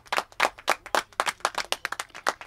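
A few people clapping by hand at the end of a song, with separate claps rather than a dense roar of applause.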